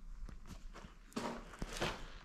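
Quiet footsteps: a few soft, unevenly spaced steps with small clicks.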